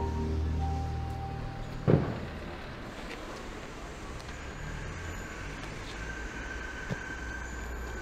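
A held music note fades out in the first second and a half, leaving a steady wash of road traffic. There is a single loud thump about two seconds in.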